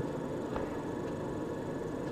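Steady background noise: room tone with a low hiss and faint hum, no distinct events.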